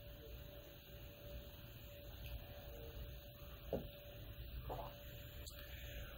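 Quiet room tone with a faint steady hum, broken by two soft, short sounds in the second half.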